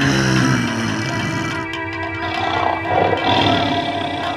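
A lion's roar sound effect laid over steady background music, the roar coming in suddenly right at the start.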